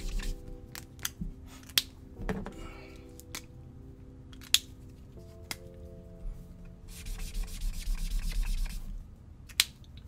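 Felt-tip illustration marker nib scratching across sketchbook paper in quick back-and-forth colouring strokes, mostly near the end. A few sharp plastic clicks as markers are handled, capped and put down.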